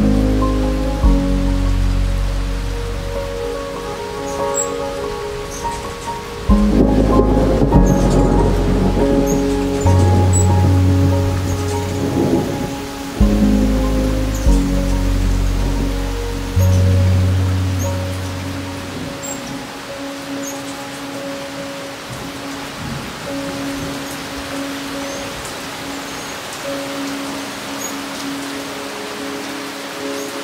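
Steady rain with several rolls of thunder, each starting suddenly and dying away, the last fading out after about nineteen seconds, over soft sustained music.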